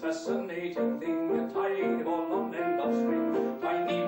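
Grand piano playing a short interlude of separately struck notes in a song accompaniment, with little or no singing over it.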